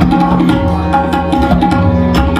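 Tabla played in a quick, dense run of strokes, the right-hand dayan's ringing strokes over deep bass from the left-hand bayan. A harmonium holds a steady melodic accompaniment underneath.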